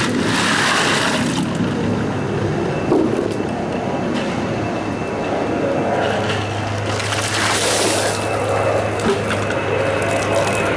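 Ice cubes rattling in plastic as they are moved from a tub into a bucket, then, about seven seconds in, a bucket of ice water dumped over a person, splashing for about a second.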